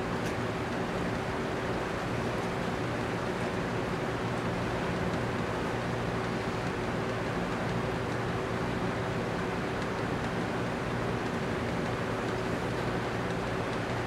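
Steady room background: an even hiss and hum with a faint, constant low tone, and no distinct events.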